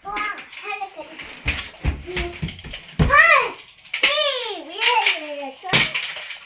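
Young children's high-pitched voices: a short call that rises and falls a little over three seconds in, then a longer sing-song call sliding down and up about a second later. A few sharp thumps come between, the loudest near the end.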